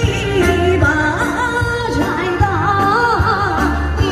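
A woman singing a melodic song into a handheld microphone, amplified through a small loudspeaker over a backing track with steady bass notes and a beat.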